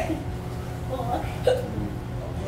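A pause in amplified preaching: a steady low hum from the sound system, with a few brief, faint voice sounds in the room, one short vocal catch about one and a half seconds in.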